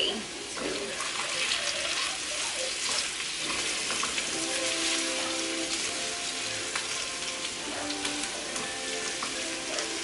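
Diced potatoes sizzling as they fry in a pan, stirred with a wooden spoon, a steady hiss throughout. From about four seconds in, soft held musical notes play over it.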